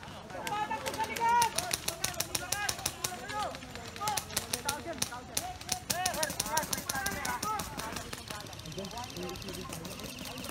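Airsoft guns firing in rapid strings of sharp clicks across the field, with distant voices shouting; the firing thins out near the end.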